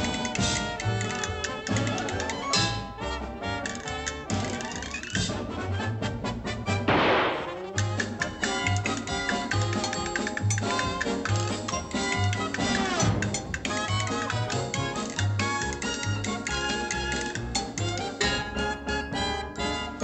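Orchestral dance music with a steady bass beat, and a loud noisy crash about seven seconds in.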